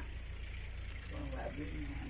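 A steady low rumble, with a faint voice speaking in the background from about a second in.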